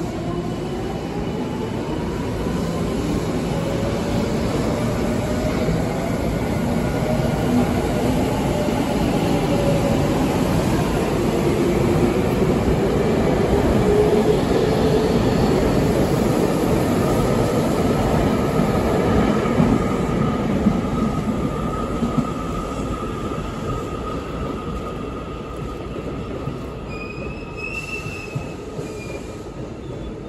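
Tokyu 5050-series electric train pulling out of a station: the traction motors whine, rising in pitch as it gathers speed, over wheel and rail noise that grows loudest in the middle as the cars pass close by, then fades away as the last car leaves.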